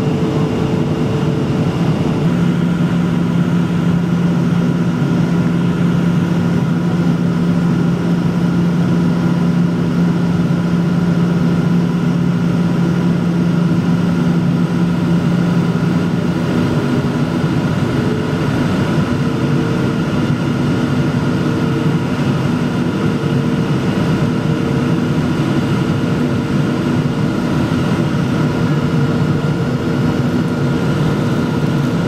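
Cabin noise of a Boeing 737-900 heard from a window seat over the wing while descending: a steady rush of air with the hum of its CFM56-7B turbofans. A strong low engine tone comes in about two seconds in and fades out about halfway through, as the engine setting changes.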